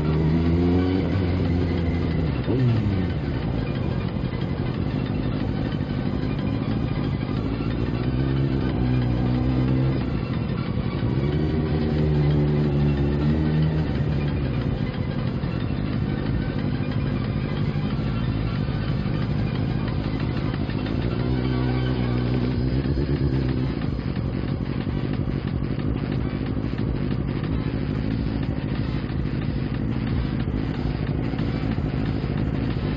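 Kawasaki motorcycle engine heard from the bike while riding, rising and falling in pitch through several short bursts of throttle, over steady wind and road noise. After about three-quarters of the way through, the engine settles to a lower, even sound.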